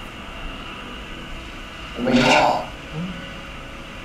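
A short spoken Thai phrase, "mai chop" ("don't like"), about two seconds in, over a low, steady background hiss.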